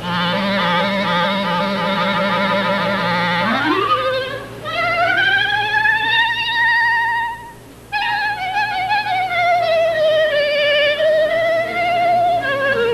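Clarinet glissando: a low note with a fast wavering trill, then about three and a half seconds in a smooth glide upward of more than two octaves to a high note held with vibrato. After a brief break the high line resumes and sinks slowly.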